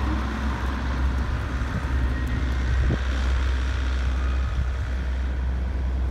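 Steady low rumble of road traffic on a residential street, with cars driving by and a short click about three seconds in.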